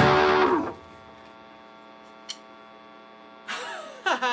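Electric guitar's final chord struck hard and ringing briefly before being cut off, ending the song; a steady amplifier mains hum then remains, with a single click about two seconds in and a voice starting near the end.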